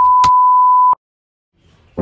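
An edited-in electronic beep: one steady high tone lasting about a second, which stops sharply with a click.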